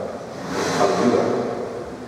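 A man's voice close on a microphone: a short, drawn-out stretch of hesitant speech, with a breathy rush into the microphone about half a second in.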